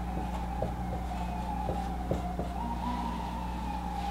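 Marker pen writing on a whiteboard in faint short strokes, over a steady high whine that lifts slightly in pitch about two-thirds of the way through and a low steady hum.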